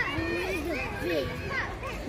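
Children's voices chattering and calling while children play, with no clear words.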